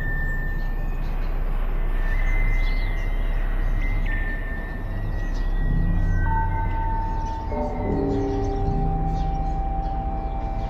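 Slow, eerie ambient music made of long held tones. A single high note carries the first half, and from about six seconds in several lower notes come in and hold together, over a steady low rumble.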